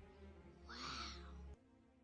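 A baby's short, faint coo lasting under a second. The sound, along with a low hum beneath it, cuts off abruptly about a second and a half in.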